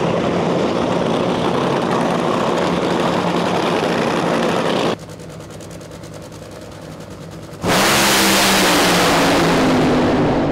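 Supercharged nitromethane Funny Car engine running loud with a steady low drone; the sound drops sharply about five seconds in. About two and a half seconds before the end, a sudden, much louder blast as a Funny Car launches down the strip, its pitch falling as it pulls away.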